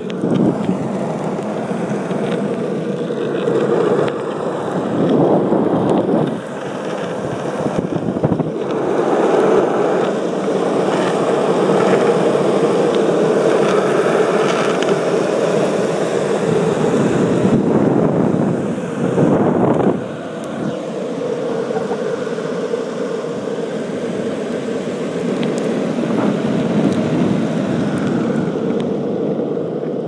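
Longboard wheels rolling over asphalt in a steady rumble, mixed with wind on the microphone as the board moves, easing briefly twice.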